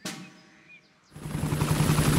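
Cartoon helicopter sound effect: the rotor's rapid steady chopping over a low hum, coming in suddenly about a second in after a faint first second.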